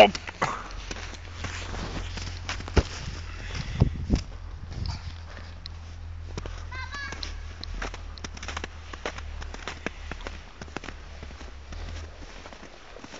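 Footsteps crunching in snow: a run of irregular crisp crunches as someone walks over snow-covered ground, over a low steady rumble on the microphone.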